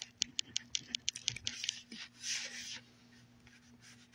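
Fingers tapping quickly on a smartphone touchscreen close to its microphone: a rapid run of light clicks over about two seconds, then a brief soft rustle, over a faint steady hum.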